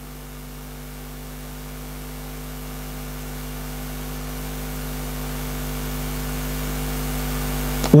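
Steady electrical mains hum: a low buzz of several fixed tones over a faint hiss, slowly growing louder.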